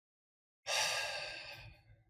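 A man's sigh, one long breath out that starts about half a second in and fades away over about a second, as he weighs his answer.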